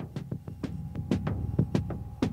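Background news music: a fast electronic drum beat over a low, throbbing drone with a faint held synth tone.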